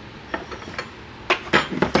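Hand tools clinking and knocking against one another and the wooden bench as they are set down and gathered: a few light clicks in the first second, then a quicker run of louder clinks in the second half.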